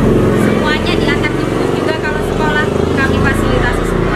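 A woman's voice talking, over a steady low hum.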